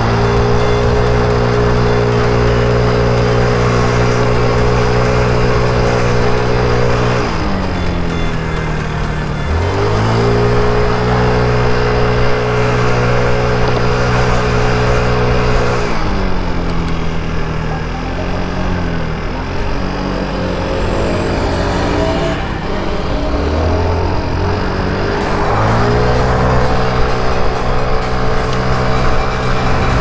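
Mondial Wing 50cc scooter engine droning at a steady high pitch under throttle. About 7 s and 16 s in it falls in pitch as the throttle eases off, wavers over the next few seconds, then winds back up to the same steady drone near the end.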